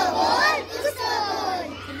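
A group of schoolchildren chanting a rhyme together in a loud chorus of many overlapping voices.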